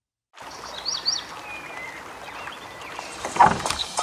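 Brief silence, then a steady ambience sound-effect bed of soft hiss with birds chirping now and then. A short cluster of knocks a little over three seconds in is the loudest sound.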